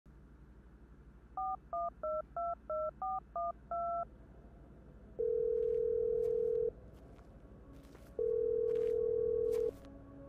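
A phone number dialed on a touch-tone phone, eight quick two-tone beeps, followed by the caller-side ringing tone, two rings each about a second and a half long. Faint clicks sound behind the rings.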